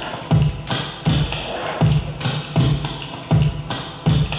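Electronic music with a steady beat: a low drum hit comes about two and a half times a second, under brighter synthesised sounds.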